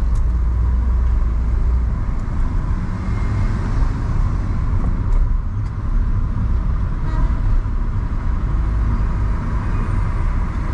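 Steady road traffic noise of cars moving through slow city traffic: engines and tyres running, with a deep continuous rumble.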